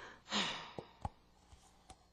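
A person's short, breathy sigh about a third of a second in, followed by a few faint clicks.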